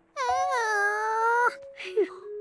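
A cartoon monkey's voice giving one long, drawn-out moan of about a second and a half, held fairly level in pitch and dropping off at the end.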